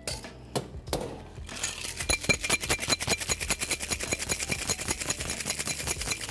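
Ice rattling inside a metal cocktail shaker shaken hard. A few separate knocks come first, then about one and a half seconds in it becomes a fast, even, continuous rattle.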